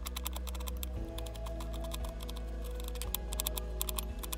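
Kitchen knife dicing an onion on a plastic cutting board: rapid, irregular taps of the blade hitting the board. Background music plays underneath.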